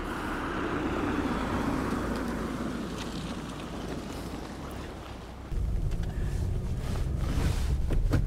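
Outdoor background noise with wind on the microphone. About five and a half seconds in, it gives way suddenly to a car's engine and road rumble heard from inside the cabin while driving.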